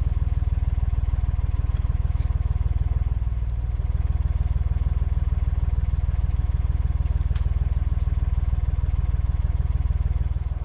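Narrowboat's diesel engine idling steadily, a low, even running note, while the boat is being moored.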